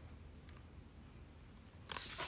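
Faint room tone with a low hum, then near the end a sudden rustle of a hardcover picture book's pages being handled.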